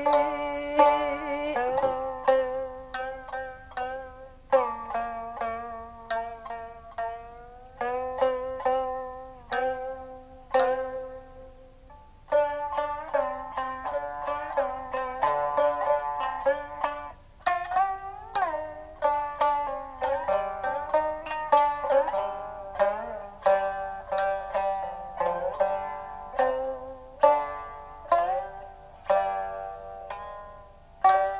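Jiuta shamisen plucked with a plectrum: a run of single notes, each struck sharply and ringing away, some sliding in pitch.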